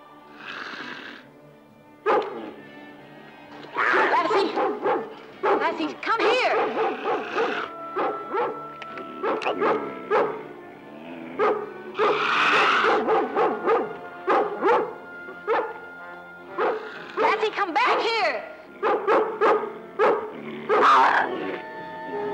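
A rough collie barking again and again and a cougar snarling during a fight, over dramatic orchestral music with held string notes.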